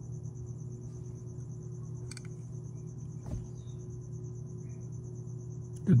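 Quiet room tone: a steady low hum, with a faint, high, rapidly pulsing trill running above it and one small tick about three seconds in.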